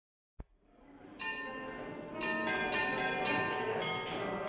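Church bells ringing, the first strike about a second in, then fresh strikes roughly every half second layering over the long ringing tones. A short click comes just before.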